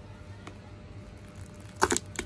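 Spiky durian husk splitting open as it is pried apart by hand along a knife cut: a brief crackling tear near the end.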